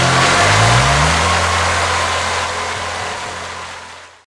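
Motorcycle engine revving, its pitch rising in the first second, then running on steadily and fading out.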